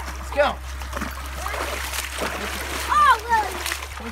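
Feet splashing through shallow creek water, with a couple of short wordless high calls from the kids near the start and about three seconds in.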